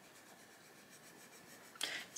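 Arteza Expert coloured pencil shading on paper: a faint, steady scratching of the lead rubbing across the page.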